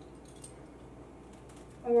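Quiet room tone with a faint click about a quarter of the way in, from a small metal measuring spoon scooping and sprinkling Pickle Crisp granules into canning jars.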